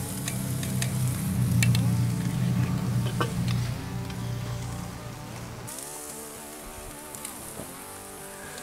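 Beef steak sizzling on a cast-iron grill grate over hot charcoal, a steady hiss with a few sharp clicks and crackles in the first few seconds. Background music plays under it, and its low part drops out about six seconds in.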